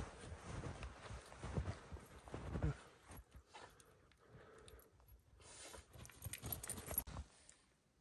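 Footsteps crunching through fresh, deep snow, about two steps a second, growing fainter and sparser after the first few seconds and cutting out just before the end.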